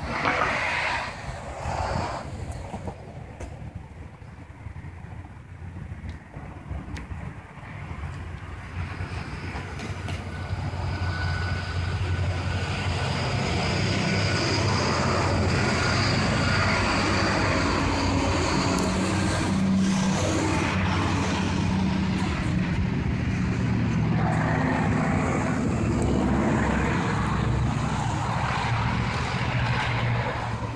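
Engine noise with a low hum, building up about ten seconds in and then holding steady and loud.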